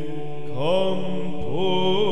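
Byzantine chant sung in English: a solo voice sings a gliding, melismatic line over a steady low drone (ison), which steps up to a higher note about half a second in.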